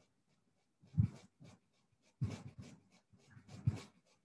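Faint handwriting sounds: short scratching strokes of a pen or pencil, about a second in and again in a few quick groups in the second half.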